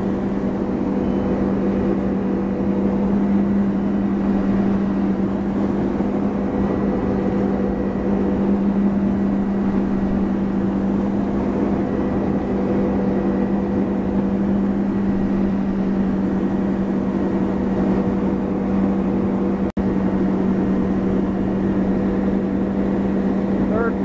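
Tow boat's engine running steadily at constant slalom speed, a steady hum over the rush of its wake. The sound breaks off for an instant about four seconds before the end.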